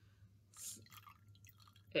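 Liquid poured from a glass beaker down a glass stirring rod into a larger beaker, decanting the solution off silver crystals: faint dripping and trickling, a little louder about half a second in.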